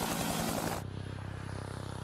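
Bell UH-1 Huey hovering, its two-blade main rotor chopping rapidly; this chop is the main-rotor wake striking the tail-rotor wake. About a second in, it cuts to the quieter, smoother whirr of an RAH-66 Comanche, whose five-blade rotor and shrouded fan tail damp the chop.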